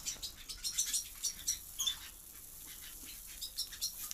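Mixed birdseed rustling and pattering as a hand scoops a handful from a plastic bucket and lets it run back in: a loose scatter of small, high ticks, thickest in the first two seconds and again near the end.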